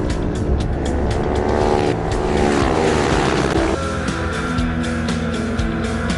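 Racing motorcycle engines revving hard and passing, their pitch repeatedly climbing and dropping, over background music.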